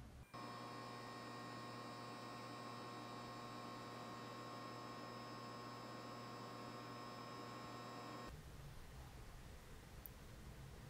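Faint steady electrical buzz of a lit neon sign, a mains hum with many overtones, which cuts off abruptly about eight seconds in, leaving only faint hiss.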